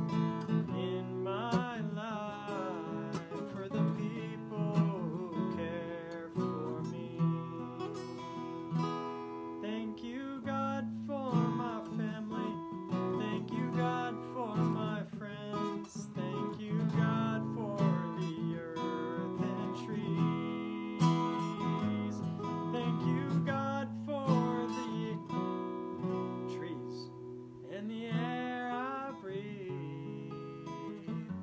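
Acoustic guitar being strummed steadily, with a man singing a wordless melody over it in a few short phrases.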